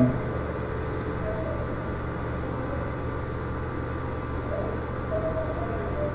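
Steady low hum and hiss of room background noise, with two faint brief mid-pitched sounds, one about a second in and one near the end.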